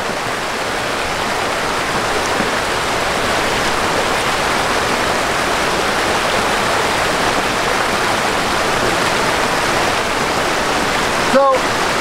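Mountain stream tumbling over rocks in a small waterfall: steady, unbroken rushing of water close by. A man's voice begins just before the end.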